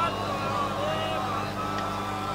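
Steady electrical hum from a public-address system, with faint, wavering voices from the gathering beneath it.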